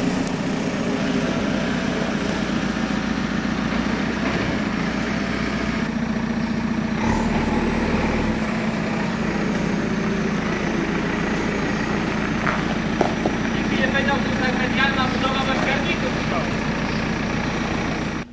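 Diesel engine of a JCB backhoe loader idling steadily.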